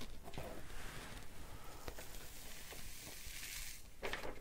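Fine embossing powder pouring off a folded sheet of paper into its jar: a soft, grainy hiss that grows stronger near the end.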